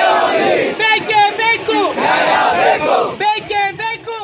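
A crowd of men shouting slogans together, many voices overlapping, easing off near the end.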